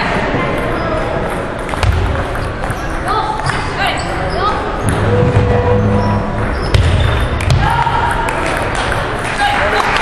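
Table tennis ball clicking off paddles and the table during a rally, in a large echoing gym hall, over steady voices and the clicks of other matches.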